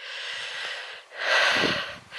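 A woman's heavy breathing close to the microphone, two long breaths, the second louder, as she walks.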